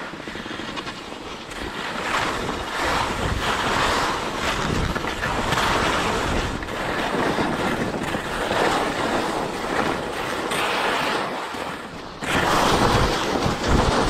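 Skis sliding and scraping over snow, a hiss that swells and fades with each turn, with wind buffeting the microphone. It gets suddenly louder near the end as the skier picks up speed.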